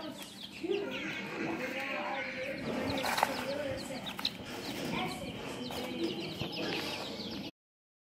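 Baby chicks peeping in a brooder: many short, high chirps overlapping. The sound cuts off suddenly near the end.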